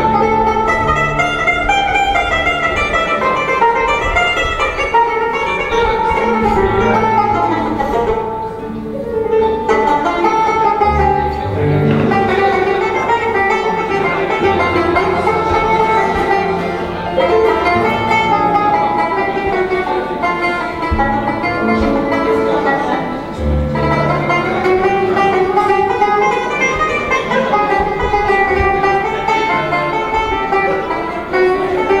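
Long-necked Algerian banjo playing a quick, continuous picked melody in chaabi style, with low sustained notes underneath.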